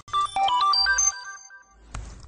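A short electronic ident jingle: a quick run of bright, chiming, ringtone-like notes that fades away over its second half.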